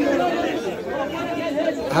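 Several people talking at once: market chatter.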